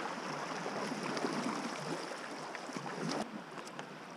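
Water rushing and splashing around a sea kayak's hull as it moves down a fast-flowing flooded creek, with light splashes from paddle strokes.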